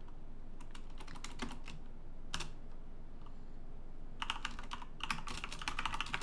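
Typing on a computer keyboard: a few scattered keystrokes in the first two seconds, a single one midway, then a quick run of keys near the end.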